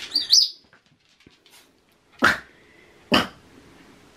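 Small dog barking twice, two short sharp barks about a second apart, after a brief high-pitched squeal at the start.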